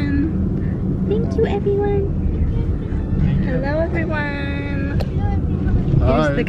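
Steady low rumble of a car's road and engine noise heard from inside the cabin, with voices speaking now and then over it.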